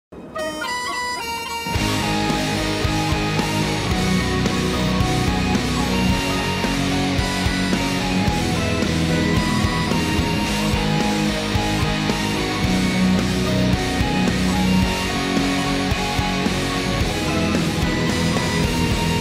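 Folk metal: a short high melody in a bagpipe-like tone opens, and about two seconds in a full band comes in with drums and a distorted electric guitar tuned to B standard, a Strinberg CLG 48 with a HellBucker pickup run through a Zoom G3X, playing under the pipe melody.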